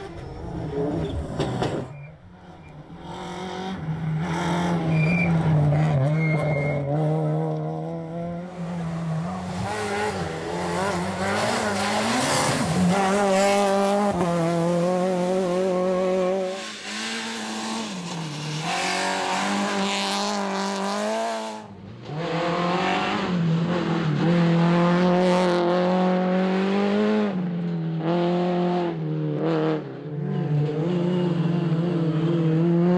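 Rally cars' engines at full throttle in a run of edited passes. Each engine revs up and drops back again and again through gear changes.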